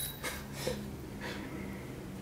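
A man breathing out in soft laughs, with a steady low hum underneath.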